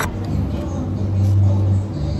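Low engine rumble of a road vehicle passing close outside, swelling about a second and a half in and then easing off. A sharp click at the very start.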